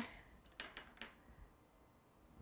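Near silence: room tone with two faint ticks about half a second and a second in, as a fondant circle is handled on the countertop.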